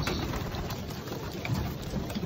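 Flock of racing pigeons in a wooden loft, with a steady crackling rustle of wings flapping and birds shuffling about.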